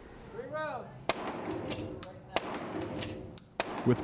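Gunshots at an indoor firing range: three loud sharp reports about a second and a quarter apart, with fainter shots in between, echoing off the range walls.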